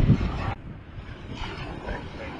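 Wind buffeting the microphone, cutting off abruptly about half a second in to fainter wind and distant surf.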